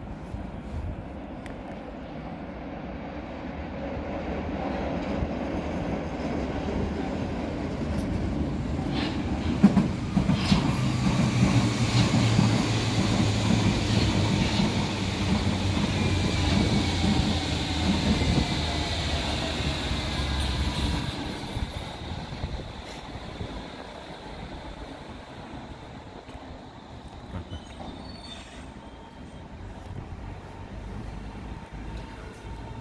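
A Berlin U-Bahn train passing: the wheel-on-rail rumble builds up, brings a few sharp clicks and high whines that fall in pitch, and then fades away in the last third.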